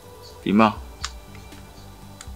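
A person's short voiced sound about half a second in, then a single sharp click, over a faint steady low hum.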